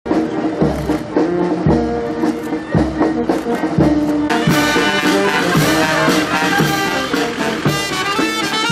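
Military brass band playing, with sustained brass notes over a low drum beat about once a second; the sound grows fuller and brighter about four seconds in.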